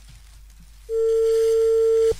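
A telephone line tone: one steady, single-pitched beep held for about a second. It starts about a second in, after a quiet pause.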